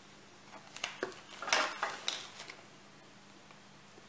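Clear plastic zip-lock bag crinkling as it is handled and moved, with a few light clicks and knocks; most of the sound comes in a short burst about a second and a half in.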